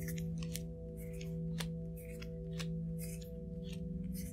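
Playing cards being dealt from the hand and laid onto a tabletop, a dozen or so short, sharp, irregular card snaps and taps, over soft ambient music with held tones.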